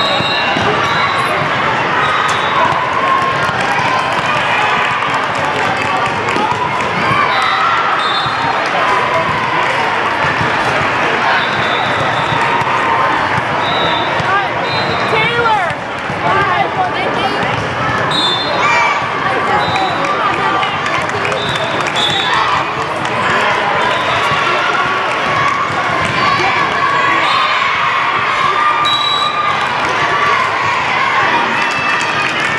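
Busy echoing sports-hall din: many overlapping voices from players and spectators, with volleyballs thudding and bouncing across several courts and short high-pitched squeaks or whistle chirps now and then.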